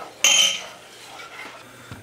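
A saucepan is set down with a single metallic clank on the steel grate of a gas stove, ringing briefly, followed by quieter stirring in the pan.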